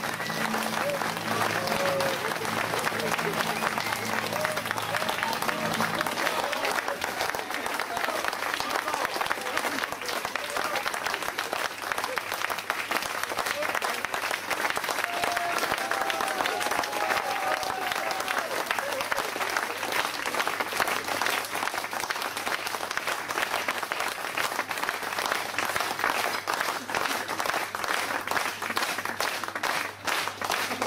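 Audience applauding, a dense, steady clapping that runs on throughout. Low held piano notes ring under it and stop about six seconds in.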